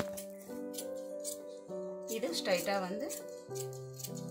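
Background piano music with held notes, over which scissors cut through fabric in short snips.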